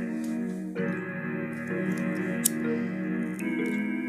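Instrumental intro of a rap beat: layered, sustained chords that change about a second in and again near the end, with a single sharp click about halfway through.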